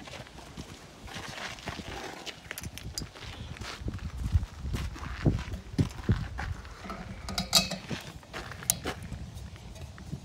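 Irregular knocks, clunks and clicks of a chequer-plate metal gas bottle box being opened and handled and a gas hose being fitted to an LPG bottle, busiest in the second half.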